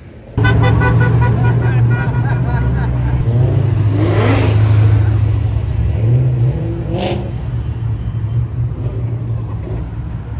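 Ford Mustang engine running loudly with a deep, steady exhaust drone as it drives past close by. It starts abruptly about half a second in, with a short rise in pitch around the middle and a brief sharp burst about seven seconds in.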